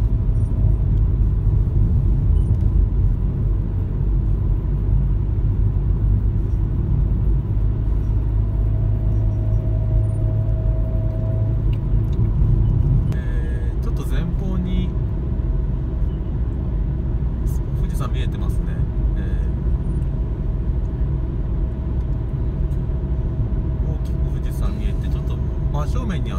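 Car cabin road noise while driving: a steady low rumble of engine and tyres, a little quieter from about halfway.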